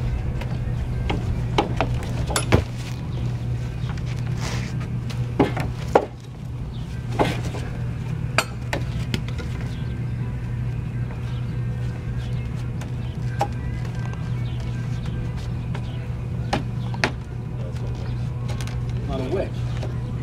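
Scattered sharp knocks and clinks of tools on timber as a steam-bent frame is wedged into a wooden schooner's hull, busiest in the first half, over a steady low hum.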